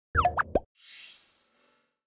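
Animated end-card sound effects: a quick run of three or four rising bloops over a low thud, then an airy whoosh sweeping upward and fading out.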